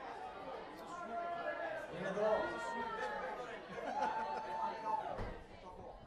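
People chattering in a large room between karaoke songs, with no music playing; one voice holds a long drawn-out call about four seconds in.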